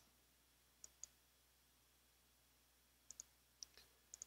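Near silence with a few faint computer clicks, two about a second in and three more near the end, as candidate numbers are entered in a sudoku program.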